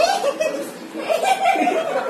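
People laughing and chuckling, with bits of speech mixed in, loudest right at the start and again in the second half.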